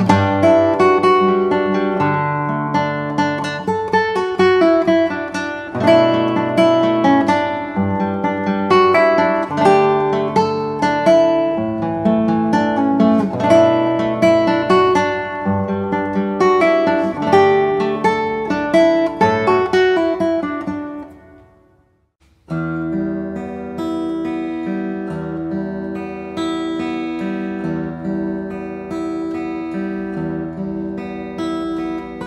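Solo nylon-string classical guitar played fingerstyle, a melodic piece that fades out to silence about 21 seconds in. After a brief pause, a steel-string acoustic guitar starts a new piece, a steady fingerpicked arpeggio.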